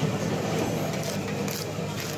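A blade scraping scales off a large catla fish in a few short strokes, over a steady background of voices and traffic noise.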